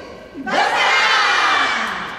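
A yosakoi dance team shouting together: a short lead call, then one long loud cry from the whole group in unison, lasting about a second and a half.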